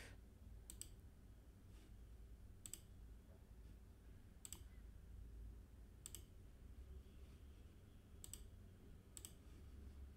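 Near silence with about six faint computer mouse clicks, spaced irregularly a second or two apart.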